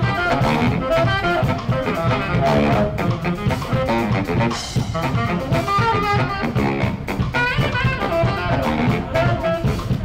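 A Navy band playing an up-tempo jazz number: brass and saxophone lines over a drum kit, with a steady beat.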